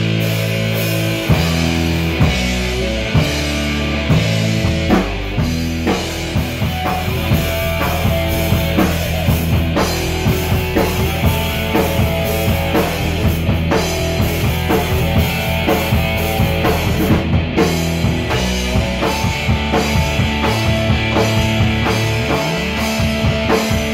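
A rock band playing live in a small room: drum kit keeping a steady beat under electric guitar and bass.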